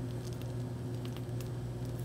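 Steady low hum of kitchen equipment, with faint small soft clicks as a pastry bag is squeezed to pipe mascarpone tiramisu filling into a cup.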